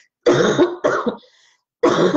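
A woman coughing twice in quick succession, clearing her throat.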